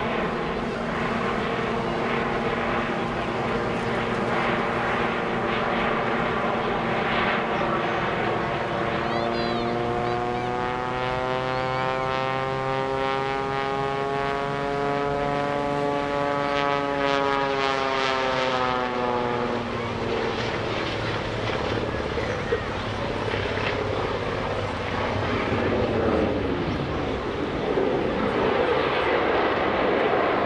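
Aerobatic biplane flying overhead: the jet-assisted Taperwing Waco (the Screaming Sasquatch) with a steady engine and propeller drone. Midway through, the engine's pitch swells up and falls back over about ten seconds as the plane climbs and tumbles.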